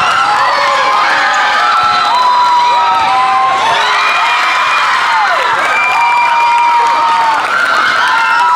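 Many young voices cheering and shouting at once after a volleyball rally, with several long held yells rising over the crowd noise.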